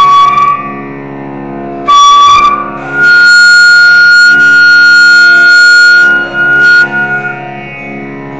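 Carnatic flute playing raga Malayamarutham over a steady drone. There are short phrases at the start and about two seconds in, then one long held high note from about three seconds to about seven seconds.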